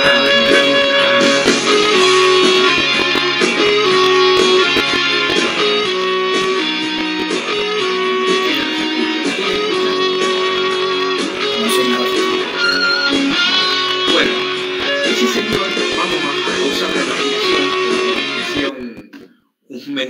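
Electric guitar playing a metal rock tune, loud and sustained; the music cuts off about a second before the end.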